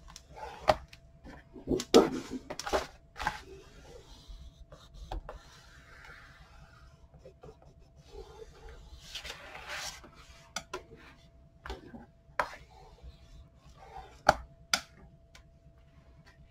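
Bone folder creasing and burnishing folds in heavy cardstock on a plastic scoring board: paper rubbing and sliding in a few longer strokes, with sharp taps and clicks of the folder and card against the board.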